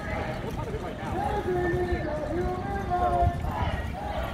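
Indistinct voices of a group of people outdoors, with the thud of footsteps and a low rumble from the microphone being carried along on foot.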